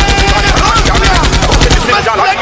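A fast, even drum roll of heavy bass hits in an electronic qawwali remix, stopping just before the end, with vocal glides over it.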